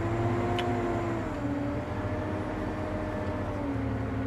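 Valtra tractor running steadily as it drives forward, heard from inside the cab: a low hum with a steady tone over it that dips slightly in pitch about a second and a half in. A faint click sounds about half a second in.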